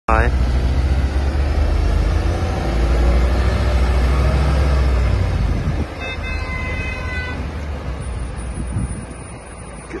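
Liebherr LTM 1150-6.1 mobile crane's diesel engine pulling away, a loud deep drone that eases off after about six seconds as the crane drives off. A short tone with several pitches sounds about six seconds in.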